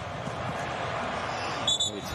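Pitch-side ambience of a football match: a steady background wash of stadium noise. Near the end a referee's whistle is blown in a short double blast, the loudest sound here.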